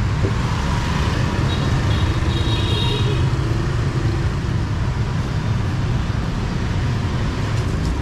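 Street traffic: scooter and motorbike engines running past close by over a steady low rumble.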